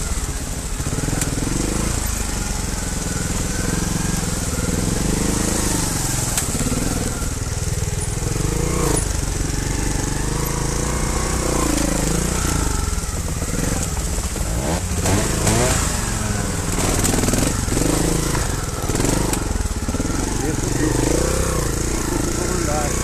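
Trials motorcycle engine heard from on board, revving up and down at low speed as the bike picks its way over rocks and along a narrow trail, with a few knocks from the rough ground.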